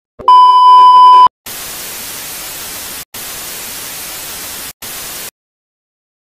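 Television test-pattern sound effect: a loud, steady, high beep for about a second, then a hiss of TV static for about four seconds. The static cuts out briefly twice and stops suddenly.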